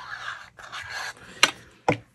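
Soft, breathy hiss while a plastic squeeze bottle of tacky glue is worked along a paper tab. Near the end come two sharp taps as the bottle is set down on a glass craft mat.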